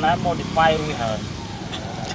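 A few short pitched vocal sounds, brief calls or words, over a steady low hum.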